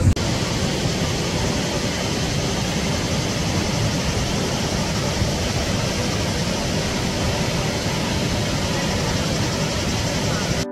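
Water of the Krka waterfalls rushing steadily over the cascades into the pool below, an even wash of noise with no break.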